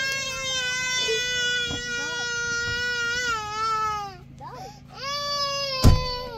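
A young child crying: one long, high-pitched wail held for about four seconds, then a second wail starting about five seconds in. A sharp knock sounds just before the end.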